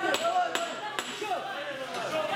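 Gloved punches landing in a boxing exchange: three sharp smacks within about a second, over background voices.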